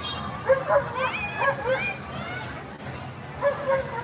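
A small dog yipping and barking in short, high, repeated calls among people's voices.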